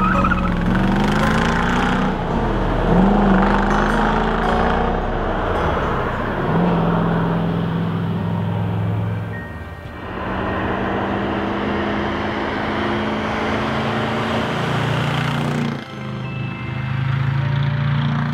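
1965 Chevrolet Corvette Stingray's side-piped V8 pulling hard, its note rising and dropping back several times as it shifts up through the gears, with background music under it. The engine sound dips briefly twice, near the middle and near the end.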